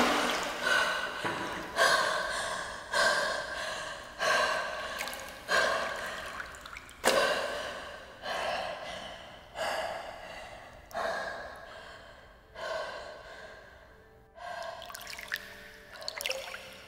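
A woman gasping for breath over and over, about one gasp a second, each breaking off sharply and trailing away, the gasps spacing out and growing fainter toward the end.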